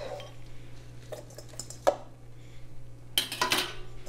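Raw shrimp going from a metal colander into a stainless steel mixing bowl and being stirred through the marinade by hand: wet handling sounds and metal clinks, with a sharp clink about two seconds in and a louder clatter near the end.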